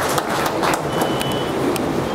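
Audience applauding at the close of a speech: a dense, steady clatter of many hands.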